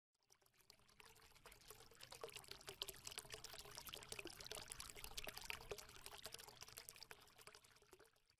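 Faint intro sound effect: a dense patter of tiny clicks and crackles, like liquid pouring, that swells up and then fades away.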